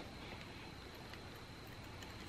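Quiet room tone: a faint steady hiss with a thin, steady high-pitched tone and no distinct handling sounds.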